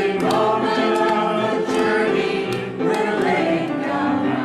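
Church congregation singing a hymn together, voices holding and moving between sustained notes.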